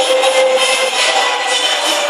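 Background music over a steady noisy din.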